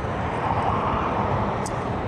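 Steady rushing noise of riding a Yokamura i8 Pro electric scooter over stone paving: wind and tyre noise, with no motor whine standing out.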